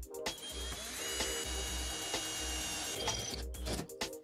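Cordless drill running, its bit boring into a metal binder clip: a steady whining grind that starts just after the beginning and stops about three seconds in, over background music with a steady beat.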